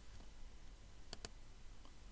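A faint double click about a second in, two sharp clicks a fraction of a second apart, over a low steady room hum.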